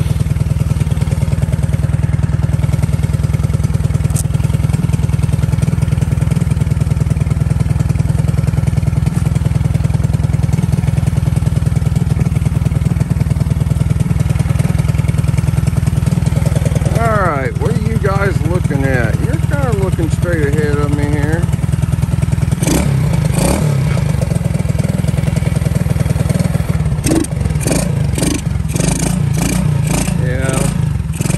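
Honda SL70 minibike with a Lifan 125cc single-cylinder four-stroke engine idling steadily, just cold-started and warming up. A run of sharp clicks or clatter comes near the end.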